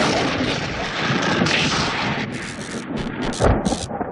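Rumbling, crackling sound effect of a broadcast ident, like something breaking apart. It runs continuously at first, then breaks into short bursts of crackle over the second half.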